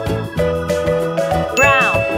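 Upbeat children's background music with steady melodic notes, and about a second and a half in a bright ding-like chime sound effect with sweeping pitch that leaves a high ringing tone.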